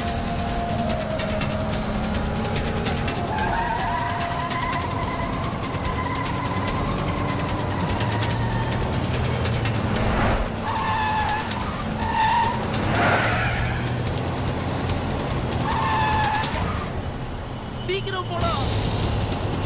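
Film car-chase soundtrack: SUV engines running hard at speed with a background score underneath. A few short high-pitched sounds come in from about ten seconds in.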